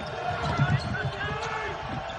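Basketball dribbled on a hardwood court: a run of low thuds, about two to three a second.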